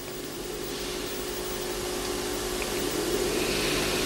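Steady background hum and hiss with faint low tones, slowly growing louder.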